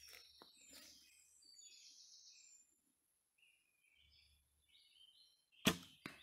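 A traditional bow is shot near the end: one sharp snap as the bowstring is released. Faint birdsong chirps before it.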